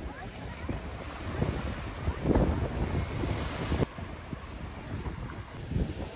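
Wind buffeting the microphone over small lake waves breaking on a pebbly shore, gustiest through the middle and dropping off sharply about four seconds in.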